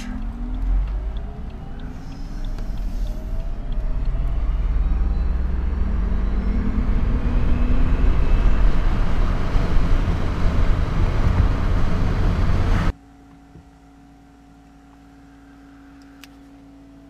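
Electric-converted BMW launching hard from a standstill. The drive motor's whine climbs steadily in pitch as several rising tones over a growing low rumble of tyre and road noise for about thirteen seconds. Then the sound drops suddenly to a faint steady hum.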